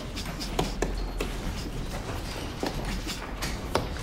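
Boxing-gym background: scattered knocks and taps at uneven intervals over a low steady hum.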